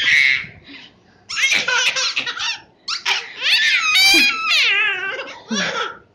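A toddler laughing and squealing in high-pitched bursts, four or so, with short pauses between them.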